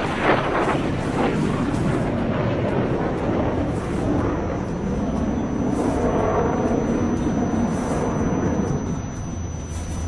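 Loud, steady jet noise from a PAC JF-17 Thunder fighter's single afterburning turbofan at high power through a hard turn, easing off a little near the end as the engine is powered back.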